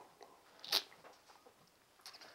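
A single short lip smack about three-quarters of a second in, against quiet room tone.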